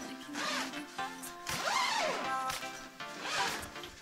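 Background music, with the zipper of a portable clothes dryer's nylon cover being pulled a few times; the pull about halfway through is the loudest.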